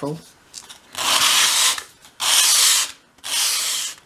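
Three long strokes of a small wooden strip rubbed edge-down across a sheet of sandpaper, bevelling its front edge.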